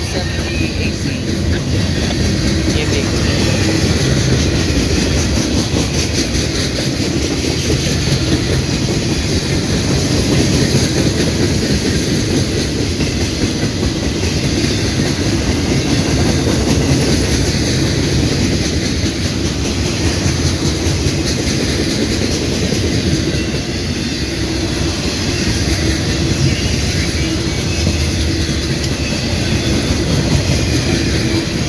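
Freight cars of a mixed manifest train rolling past close by: a steady rumble of steel wheels on the rails with a continuous clickety-clack.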